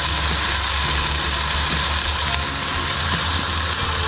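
Two beef smashburger patties sizzling steadily on a cast iron griddle.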